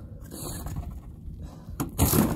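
A hand brushing wet snow off the wire-mesh top of a live-animal cage trap: soft swishing, with a sharp click near the end.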